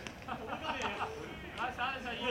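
Voices talking and calling out, several overlapping, in the open air of a ball field.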